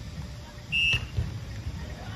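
A single short, high whistle blast, about a quarter of a second long, over a steady low rumble of wind on the microphone.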